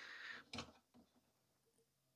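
Near silence, with faint handling noise from the metal hard-drive cage being lifted out of the PC case: a soft scrape, then a small click about half a second in.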